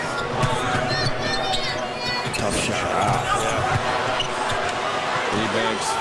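Live basketball game sound in a large arena: the ball dribbling on the hardwood floor, sneakers squeaking, and a steady crowd din.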